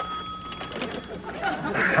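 A telephone bell ringing, cut off a little under a second in as the phone is answered, followed by voices.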